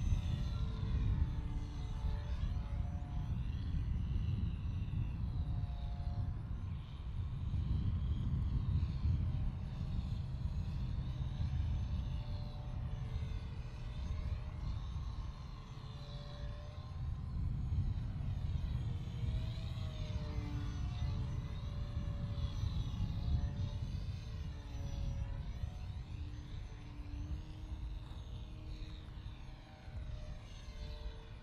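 Home-built foam RC biplane in flight: its motor and propeller make a thin droning whine whose pitch rises and falls again and again. Under it runs a louder, constant low rumbling noise.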